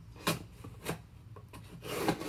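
Packaging being handled and opened by hand: short rubbing scrapes, two near the start, then a longer, louder rustle building near the end.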